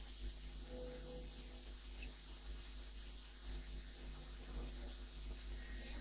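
Marker writing on a whiteboard, faint against a steady room hiss and mains hum, with a brief squeak about a second in.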